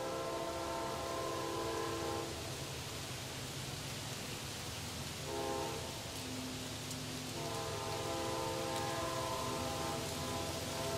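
Air horn of an approaching Amtrak GE Genesis P40 locomotive sounding a chord, with a long blast ending about two seconds in, a short blast near the middle, and another long blast from about seven seconds on: the long-short-long ending of a grade-crossing warning. The low rumble of the oncoming train runs underneath.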